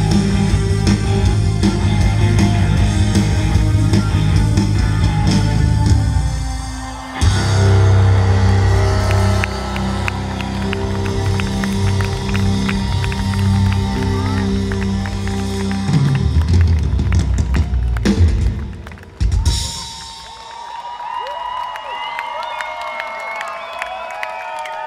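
Live rock band playing loud, with drum kit, bass and keyboards; the music drops briefly about six seconds in and comes back in full. The song ends about nineteen seconds in, and the crowd cheers and applauds.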